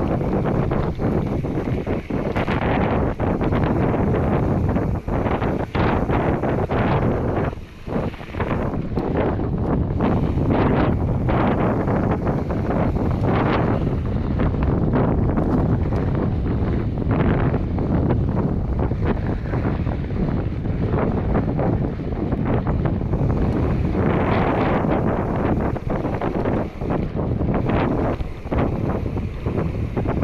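Wind buffeting the camera microphone on an e-mountain bike riding a dry dirt singletrack: a steady rush broken by many short knocks and rattles from the tyres and bike over bumps.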